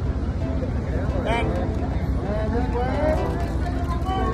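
Photographers and onlookers calling out over one another above a steady background rumble of the crowd, with no clear words.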